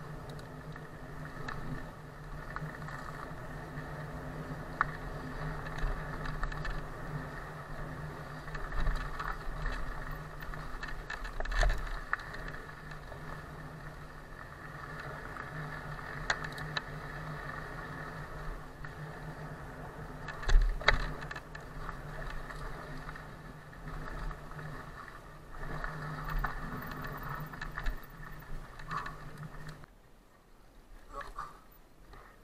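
Cube Stereo Hybrid 160 HPC SL electric mountain bike riding fast down a dirt forest singletrack: a steady rush of tyre and rolling noise with chain and frame rattle. Sharp knocks come from bumps in the trail, the loudest about two-thirds of the way through.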